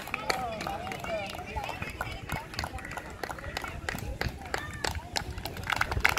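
Irregular hand claps from a group of youth footballers, mixed with their overlapping chatter and calls.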